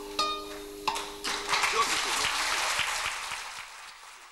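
Classical guitar playing the last chords of a song, then audience applause breaking out about a second in and fading away near the end.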